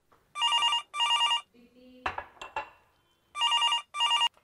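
Telephone handset ringing with an electronic double ring: two short trilling bursts about a second in, and another pair near the end. A brief clatter of clicks comes between the rings.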